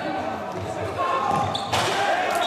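Indoor futsal play in a sports hall: players' shouts mixed with thuds of the ball and feet on the wooden floor, echoing in the hall, with a louder burst of noise near the end.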